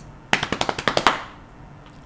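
A rapid run of about a dozen sharp clicks or taps packed into under a second, starting shortly after the beginning, then stopping.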